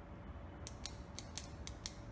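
Short intro sound effect for a logo animation: a low rumble under a faint steady hum, with six sharp mechanical clicks in the second half, starting and stopping abruptly.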